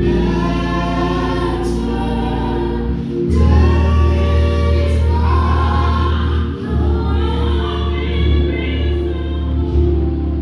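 Gospel choir singing over held bass notes that change twice.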